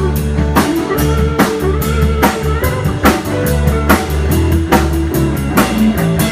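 Live band playing an instrumental section of a blues-rock song, with no singing. A drum kit keeps a steady beat under electric guitar and bass guitar.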